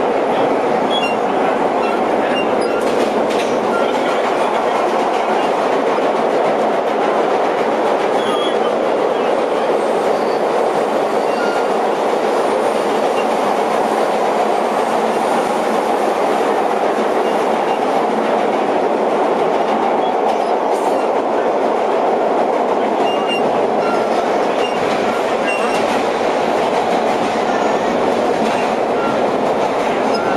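Vintage R1/R9 subway cars running through a tunnel, heard from inside the front car: a loud, steady noise of wheels and motors on the rails that never lets up.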